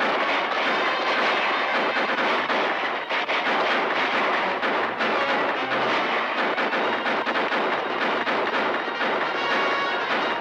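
Rapid, overlapping rifle shots of a staged gunfight, many firing at once, with an orchestral film score playing underneath.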